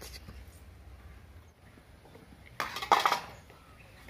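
A brief clatter on a stainless steel plate about two and a half seconds in, lasting about half a second, as something is set down in it.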